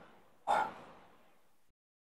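A lifter's short, sharp breath, about half a second in, as he braces to start a set of dumbbell presses.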